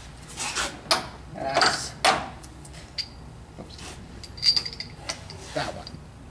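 Metal spark plug sockets being handled: a few short irregular clinks and rattles, with one sharper clink about four and a half seconds in that rings briefly.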